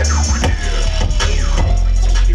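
Live turntable scratching over a beat with heavy bass: short scratched sounds slide up and down in pitch, with a longer downward slide in the second half.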